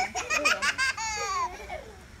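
A young child laughing in quick high-pitched bursts, then letting out one long, high squeal that falls in pitch.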